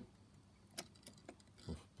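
A few faint light clicks of fingers handling a small die-cast model log trailer's stanchions, with one sharper click a little under a second in.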